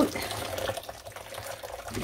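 Hot wash water streaming and dripping off a sodden packet of wool fleece as it is lifted out of the pot, splashing back into the water below. It is heaviest at first and thins to a patter within about a second.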